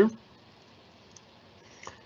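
Quiet room tone with two faint, short clicks, one about a second in and a slightly clearer one near the end.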